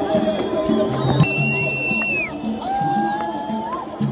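Loud music with a repeating bass pattern playing over a crowd of fans, with two long sliding tones in the middle, the first falling and the second rising.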